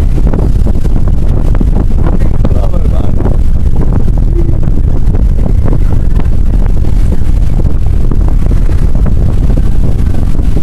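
Strong wind buffeting the microphone on the deck of a yacht under way, a loud steady rumble, with faint voices underneath.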